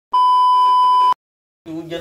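A steady electronic test-tone beep, about a second long, that cuts off suddenly. It is the TV colour-bars tone, used as a transition sound effect.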